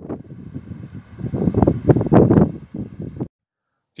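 Wind buffeting the microphone outdoors: a loud, gusting rumble that swells in the middle and cuts off suddenly a little after three seconds in.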